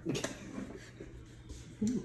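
A short handling noise at the start, then faint, low voices, with a louder voice starting near the end.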